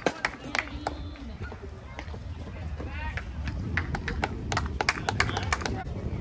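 Open-air background between plays: faint voices, a low steady rumble, and many scattered short clicks and taps, with a brief voice about three seconds in.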